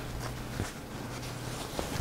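Cotton fabric rustling and brushing against the quilt top as it is handled and laid out, with a few soft taps, over a steady low hum.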